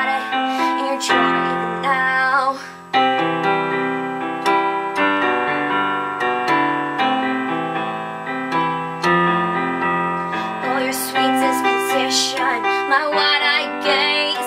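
Electronic keyboard played on a piano sound: a slow instrumental passage of sustained chords, the bass note changing every second or two, with a brief drop in level just before a new chord about three seconds in.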